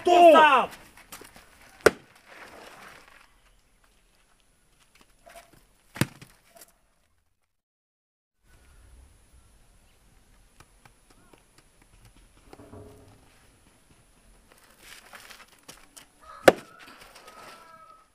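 Three separate sharp knocks against quiet room sound, with faint low voices in between.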